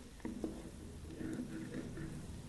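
A spatula stirring fried egg and onions in a steel kadhai: soft scraping with a couple of light taps against the pan in the first half second.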